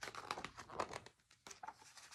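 Faint crinkling and rustling of a picture book's paper page being turned, as a string of short crackles.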